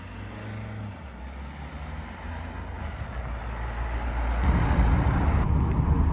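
A Nissan Qashqai with a 1.5 diesel engine approaching along a street, its engine and tyre noise growing steadily louder as it comes closer.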